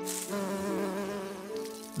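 A steady, pitched buzzing tone that wavers slightly, like a cartoon insect's buzz, with a brief hiss at the very start.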